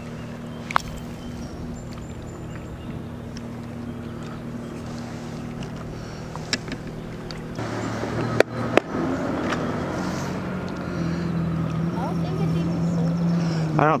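A steady engine hum that drops in pitch about halfway through and rises again a few seconds later. A few sharp knocks sound over it, two of them close together a little past the middle.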